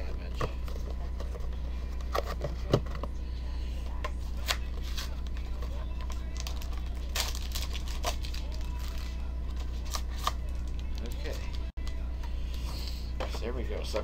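Panini Black Gold foil card packs crinkling and the cardboard box rustling as the packs are pulled out of their tray by hand, with scattered light clicks and scrapes over a steady low hum.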